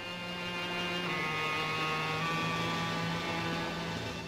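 Film background score holding one long sustained chord, fading out near the end.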